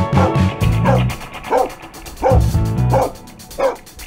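Background music with a steady bass line, over which a dog barks about five times, roughly one bark every two-thirds of a second.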